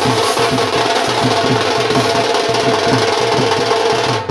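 Dhol, a double-headed barrel drum, beaten with sticks in a loud, fast, steady rhythm, its low strikes repeating several times a second.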